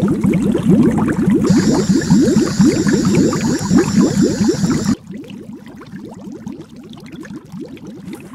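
Underwater bubbling sound effect, a dense stream of bubbles rising. From about a second and a half in, a high electronic whine, the sonic screwdriver effect, rings over it until about five seconds in, when the sound drops sharply and the bubbling carries on much quieter.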